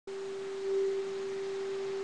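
A steady single-pitched tone, a pure mid-range note held without change, slightly louder for a moment just before one second in.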